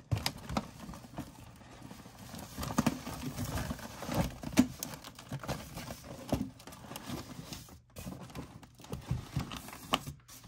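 Black plastic 4-inch nursery pots and their tray knocking and scraping as a heavy tray of potted plants is set down and shuffled into place on a shelf, with a run of irregular clatters and thumps.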